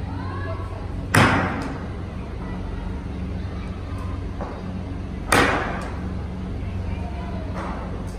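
Cricket bat striking the ball twice, about four seconds apart, each a sharp crack that echoes around a large indoor net hall.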